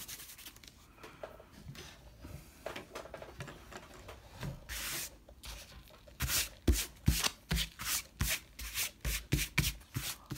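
Fingers rubbing dried masking fluid off watercolour paper, lifting it from the painted surface. The rubbing is faint at first, then about six seconds in turns into louder, quick back-and-forth strokes, about three a second.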